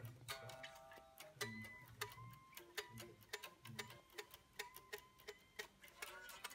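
Unamplified electric guitar strings picked quietly, heard only acoustically while the players monitor through headphones: rapid pick clicks about five a second, with short thin notes.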